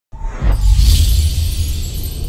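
Intro sting music with a deep bass rumble, a crash-like hit about half a second in, and a shimmering high swell after it.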